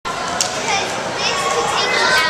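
Children's voices chattering and calling, several at once, a steady babble of kids playing in an indoor hall.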